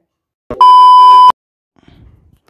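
A single loud electronic beep: a steady, pure-sounding tone of about 1 kHz lasting under a second, starting about half a second in and cutting off sharply.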